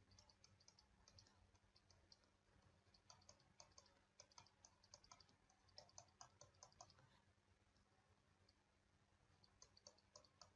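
Very faint clicks and taps of a stylus writing on a tablet screen, coming in a loose run from about three to seven seconds in and again near the end.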